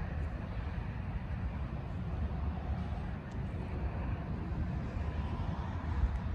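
The BMW X5 xDrive35d's 3.0-litre inline-six twin-turbo diesel idling with a low, steady rumble.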